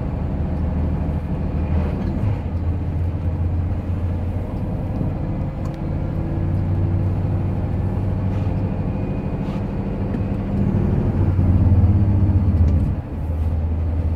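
A heavy truck's diesel engine heard from inside the cab, running with a steady low drone while the truck rolls slowly downhill. The engine note grows louder a few seconds before the end, then drops off suddenly.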